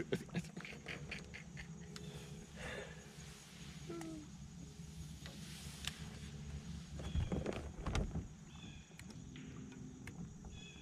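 Quiet outdoor ambience with faint clicks and handling noises, broken by a short laugh about three-quarters of the way through.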